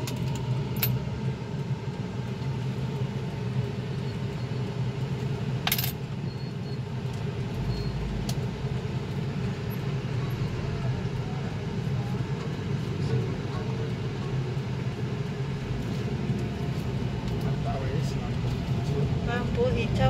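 Steady low car engine and road hum heard from inside the car's cabin in slow town traffic, broken by a sharp click about a second in and a louder one about six seconds in.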